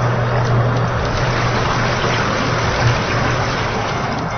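Submersible drainage pump running in water: a steady low motor hum under a continuous wash of water noise.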